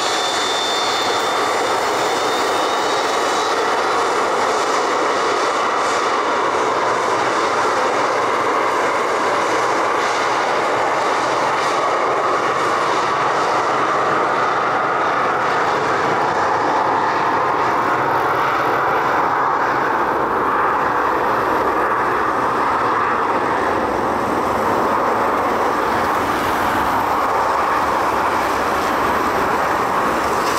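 Jet engines of a twin rear-engined airliner running at high power through its takeoff roll on a wet runway: a loud, steady jet noise that fills out in the low end about halfway through as the aircraft comes past.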